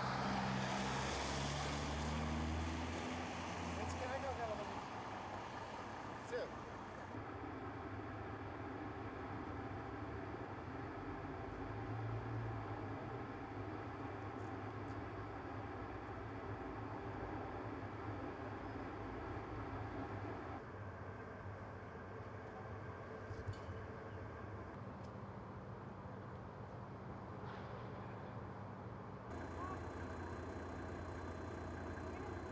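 Street noise of motor vehicles: an engine running and rising in pitch over the first few seconds as the vehicle moves off, then a steady traffic hum.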